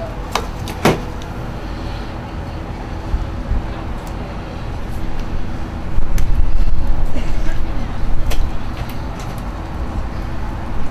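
Low, uneven outdoor background rumble that swells much louder about six seconds in, with two sharp clicks near the start.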